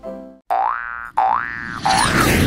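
A tune's last note stops, then a sound effect of rising pitched glides plays three times, about two-thirds of a second apart, each swooping up and holding before cutting off.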